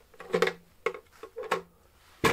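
Clear plastic collection bin of a cyclone dust collector being tipped and handled, holding aluminium milling chips and dust: about four short knocks and clatters, each with a brief ring.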